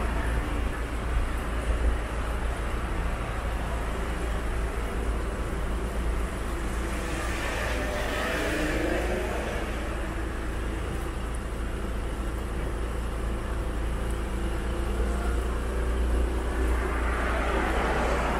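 Street traffic: a steady rumble of cars on the road, with one vehicle swelling up as it passes close by about halfway through and another approaching near the end.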